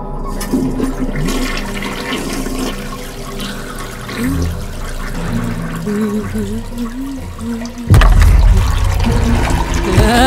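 Toilet flushing: steady rushing water that suddenly surges much louder near the end.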